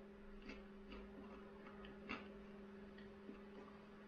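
Near silence: room tone with a steady low hum and a handful of faint, irregular clicks.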